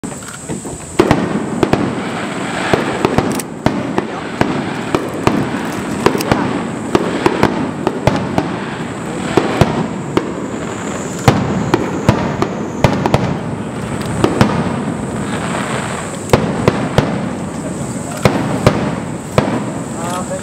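Aerial firework shells bursting in quick succession: sharp bangs, several a second at the busiest moments, over a continuous rumble and crackle.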